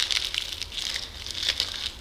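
Crinkling and crackling of a small toy's packaging as hands work at it, trying to get it open: a run of short, irregular crackles.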